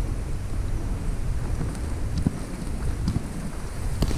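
Wind buffeting the microphone: a steady low rumble, with a couple of faint knocks or rustles about two and three seconds in.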